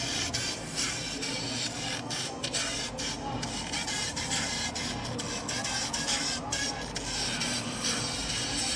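Music played through the tiny speakers of a pair of A88 true-wireless earbuds held up close to the microphone, heard as a thin, steady wash of sound.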